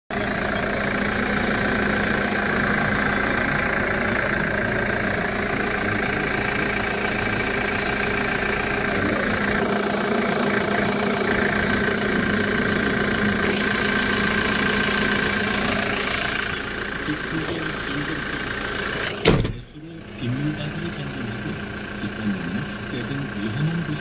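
The 2008 Hyundai Porter II's diesel engine idling steadily, heard through its open engine bay. It gets quieter about two-thirds of the way through, and a single loud knock comes about nineteen seconds in.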